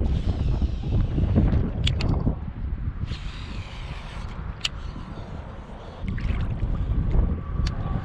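Strong gusty wind buffeting the microphone in a low rumble, with a few short sharp clicks.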